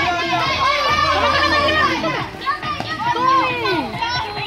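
A group of children shouting and calling out over one another, many high voices at once.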